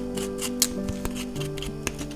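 Small scissors snipping the yarn fur of a miniature sculpture: several short, sharp snips, the loudest about half a second in, over background music.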